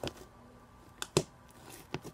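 Homemade slime being worked by hand, giving a few short sharp clicks and pops: one at the start, two about a second in, and one near the end, over a quiet background.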